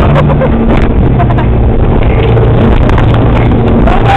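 Motorboat running at speed: a loud, steady low engine drone under a continuous rushing noise.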